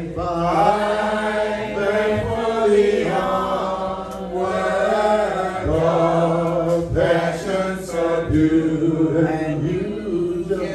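Church congregation singing a hymn together: the song of invitation that closes the sermon.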